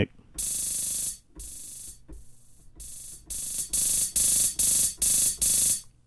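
Closed hi-hat samples from a software drum machine plugin retriggered by an arpeggiator at a 1/64-note rate, making a run of short hissing hi-hat rolls. The rolls are quiet at first and come louder and at about two a second from about three seconds in, as the arp's dynamic setting is raised.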